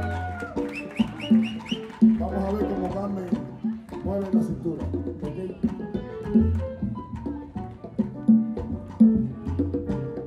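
Live salsa band playing a steady groove: repeating bass notes under regular percussion clicks and melody lines.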